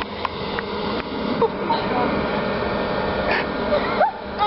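Steady rushing noise, with scattered faint children's voices.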